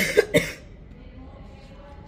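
A person coughing: a quick run of about three sharp coughs in the first half-second.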